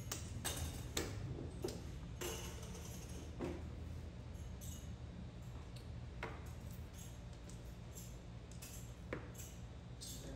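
Mahjong tiles clicking and clacking as players draw, discard and arrange them on the table, in irregular sharp clicks, most often in the first few seconds, over a steady low hum.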